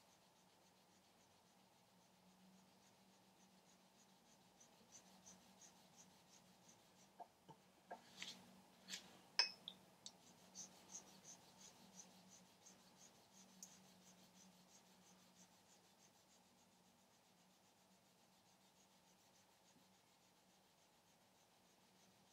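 Faint, rhythmic rubbing of a wet abrasive stone back and forth over a copper sheet, a few strokes a second, with a few light clicks in the middle. The water slurry between stone and metal is doing the cutting, stoning the copper to a matte finish.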